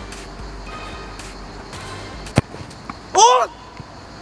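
A football kicked hard once, a single sharp thud of a penalty shot about two and a half seconds in, followed by a short loud shout as it is saved. Faint background music runs underneath.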